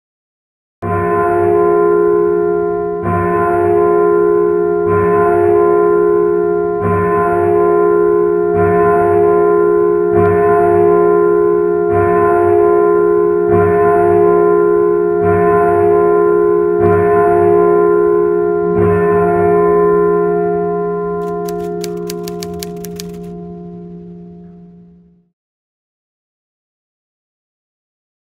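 Produced intro music: a deep, bell-like chime struck about every two seconds over a steady held tone, each stroke with a light high tick. Near the end it fades away under a quick run of high ticks.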